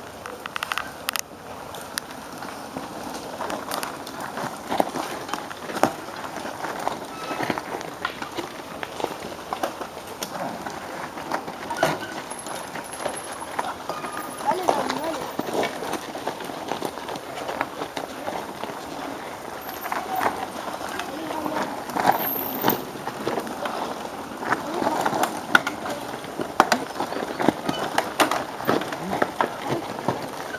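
Cyclocross bikes riding past over a dirt track covered in fallen leaves, with many scattered clicks and rattles, under indistinct voices.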